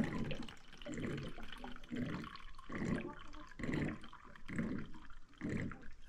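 Drinking water being poured into a cup or container, coming in a series of short spurts about one a second.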